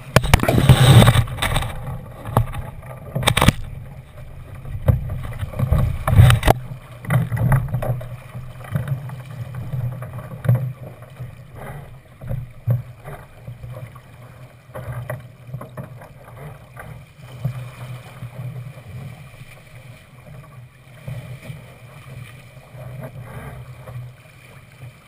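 Water rushing and slapping against the hull of a Thistle sailing dinghy under sail, with a few loud splashes or knocks of waves against the boat in the first six seconds, then a lighter, steadier wash.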